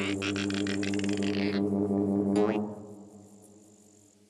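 Cartoon music and sound effects: a deep droning note like a didgeridoo, with a fast rattle on top for the first second and a half and a quick whistle-like swoop near the middle, then fading out over the last second or so.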